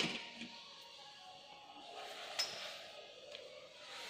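Quiet handling of paper and a marker on a desk, with a sharp click at the very start and a lighter click about halfway through.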